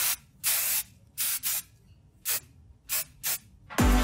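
Aerosol hairspray can spraying in a series of about six short bursts with brief pauses between, the first burst the longest.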